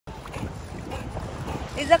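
Wind rumbling on the microphone over shallow sea water, an uneven low noise, before a voice starts near the end.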